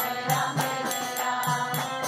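Harmonium playing sustained reedy notes, with devotional chanting voices and a steady rhythmic percussion beat.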